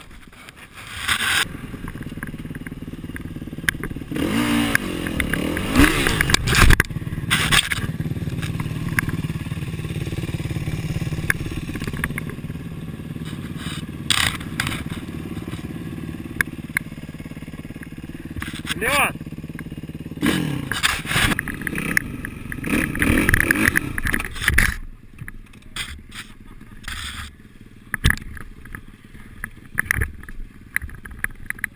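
Kawasaki KX450F single-cylinder four-stroke motocross engine running at a steady idle and revved up in several short bursts. Sharp knocks are scattered through it, and it turns quieter with scattered clicks near the end.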